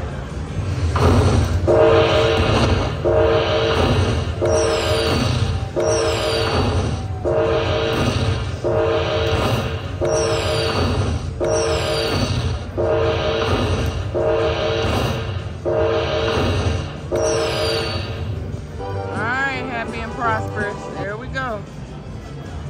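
Dragon Link (Happy & Prosperous) slot machine tallying its hold-and-spin bonus: a chime sounds about once a second as each fireball coin's value is collected, some with a high falling whistle. Near the end comes a short warbling jingle, over a steady low casino hum.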